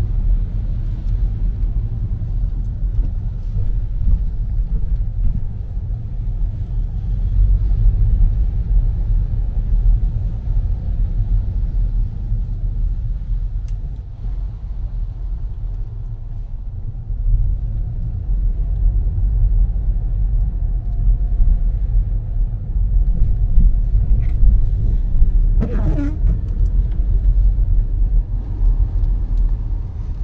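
Low, steady rumble of a car driving, heard from inside the cabin. It eases off a little about halfway through, and a short sound is heard near the end.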